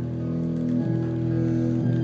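Acoustic guitar playing sustained, ringing chords, with a new chord struck about a second in and again near the end.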